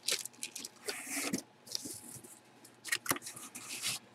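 Rustling and scraping of packaging being handled, the plastic jersey bag and cardboard box, with a few sharp clicks between the quiet stretches.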